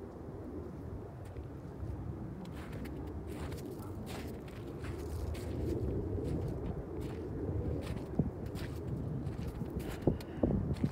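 Footsteps crunching on snowy, stony ground, irregular steps starting a few seconds in, over a low steady rumble.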